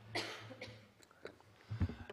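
A single short cough.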